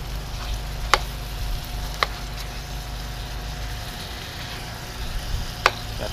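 Spaghetti in chili sauce sizzling in a wok while a metal spatula stirs it, clicking sharply against the pan three times.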